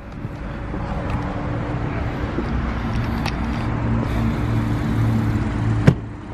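2013 Audi S4's supercharged V6 idling with a steady low hum. Near the end a car door shuts with a single sharp thud.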